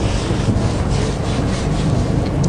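Rhythmic rubbing or scraping strokes, about three a second.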